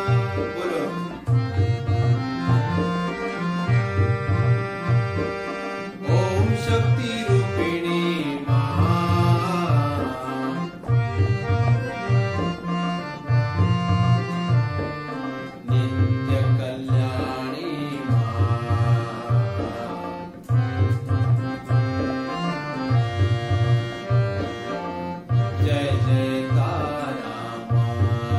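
Harmonium playing the tune of a Hindi devotional song (bhakti geet) over a steady, repeating tabla rhythm.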